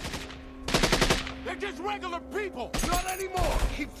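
Film-soundtrack gunfight: a burst of rapid automatic gunfire about a second in, with more scattered shots later. Near the end a voice shouts "Keep firing!".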